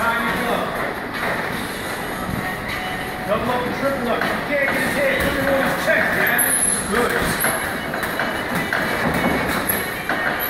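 Indistinct voices talking in the gym, with a few sharp thuds from boxers sparring in the ring: gloved punches landing and feet shuffling on the canvas.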